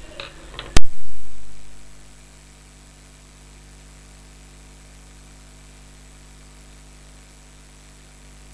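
Steady electrical mains hum and hiss of the recording setup, broken about a second in by one loud sharp pop that dies away over the following second.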